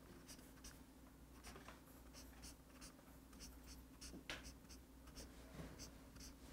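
Faint strokes of a felt-tip highlighter on a paper page: a string of short scratchy strokes, with a louder one a little after four seconds in.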